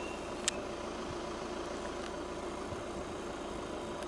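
Car engine idling, heard from inside the cabin as a steady hum, with one short click about half a second in.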